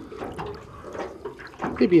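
Water trickling and splashing as a hooked snapper is lifted at the surface on the line, with a man's voice coming in near the end.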